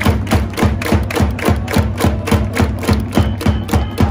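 Baseball cheering section's drums and hand clappers beating a fast, steady rhythm of about four or five strokes a second, with a whistle blown in three short blasts near the end.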